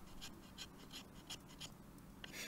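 Knife blade shaving thin strips off a dry stick to make kindling: a quick run of faint short scrapes, about four or five a second.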